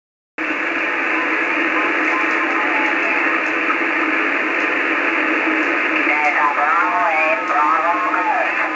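Shortwave receiver audio from a FunCube Dongle SDR with an HF up-converter, starting abruptly under half a second in: thin, muffled static hiss. In the last two seconds a station's voice comes through over the static, distorted and warbling.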